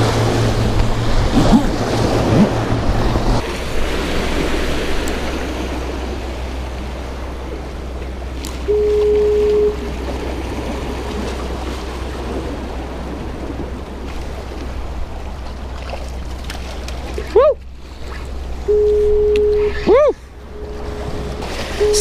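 Ocean surf washing and breaking against the rocks of a jetty, a steady noisy wash. A short steady tone sounds for about a second twice, once near the middle and again near the end, with a couple of quick rising chirps just before the second one.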